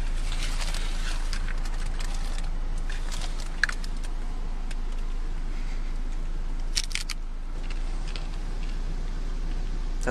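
A bite into a Doritos Locos Taco's hard Doritos-chip shell: a few sharp cracks, one about three and a half seconds in and a cluster near seven seconds, over a steady low hum inside a car.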